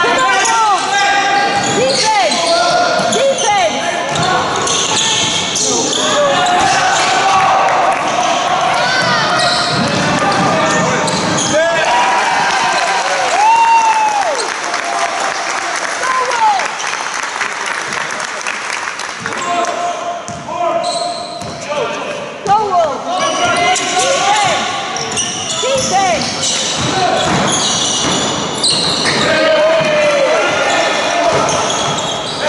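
Basketball game on a wooden sports-hall court: the ball bouncing, shoes squeaking in short chirps, and players and spectators calling out, all echoing around the hall.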